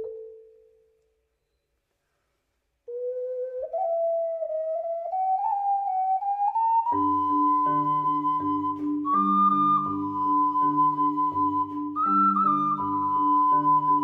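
Ocarina and marimba duo: a marimba note dies away, then after a short pause a solo ocarina line climbs slowly in small steps. About seven seconds in, the marimba comes in with repeated chords over a low bass while the ocarina holds long high notes.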